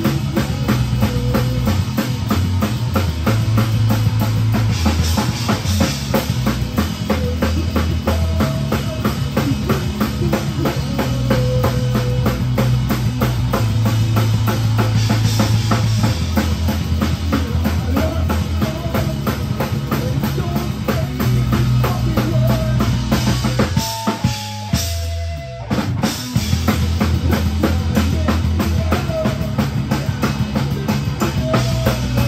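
Rock band playing live with no singing: a drum kit, loudest of all, with bass guitar and electric guitars. About 24 seconds in the band cuts out for a second or so, leaving a few ringing guitar notes, then comes back in together.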